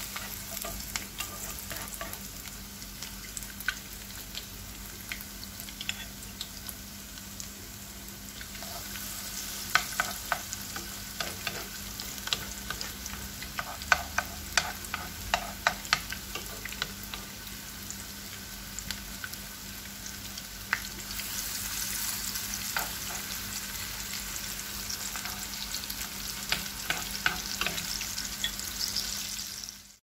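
Tortang giniling patties (minced beef, vegetables, egg and flour batter) frying in oil in a nonstick pan: a steady sizzle with frequent sharp crackles and pops, growing louder about two-thirds of the way through. A spoon works in the pan among the patties.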